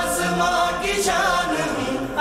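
Song with a group of voices singing long held notes over backing music.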